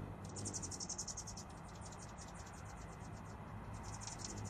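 Hummingbird chattering: a fast run of high, dry ticking notes lasting about two seconds, which starts again near the end. A low, steady hum runs underneath.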